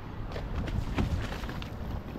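Wind buffeting the microphone over choppy water slapping at a seawall, a steady low rumble with a few soft knocks, the clearest about a second in.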